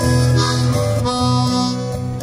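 Harmonica playing a blues solo line of held and shifting notes over a strummed acoustic twelve-string guitar.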